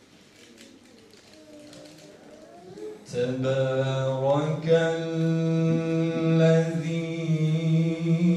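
A man chanting solo: a soft, wavering voice begins, then about three seconds in it swells into a loud, melodic chant of long held notes.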